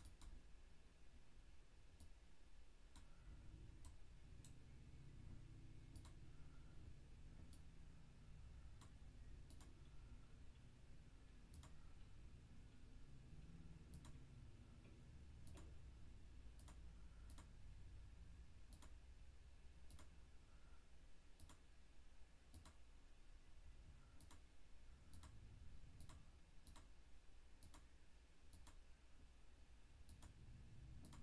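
Faint, irregular computer mouse clicks, one every second or two, as spots are clicked away with a photo editor's spot-fix tool, over a low background hum.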